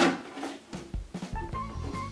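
Quiet background music with a few held notes, opening with a short sharp burst of noise.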